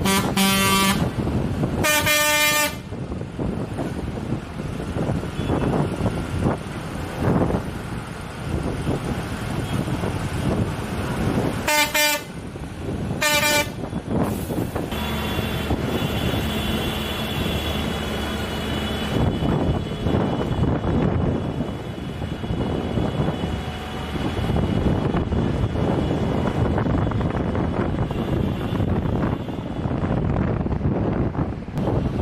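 Tractors' horns sound four short blasts in two pairs, one pair right at the start and another about twelve seconds in. Between and around them the tractors' diesel engines run steadily with road noise, and a few steady engine tones stand out for a few seconds after the second pair.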